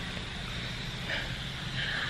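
Steady low background noise, with a faint brief rustle about a second in.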